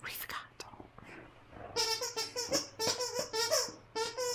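Plush squeaky toy squeezed repeatedly in a dog's mouth: a short breathy burst at the start, then from about halfway in a quick run of squeaks, several a second.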